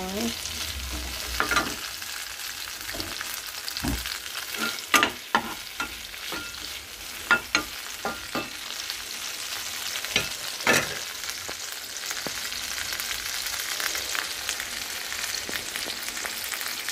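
Tomato wedges sizzling steadily in hot oil in a nonstick frying pan, stirred with a steel spatula that clicks and scrapes sharply against the pan now and then.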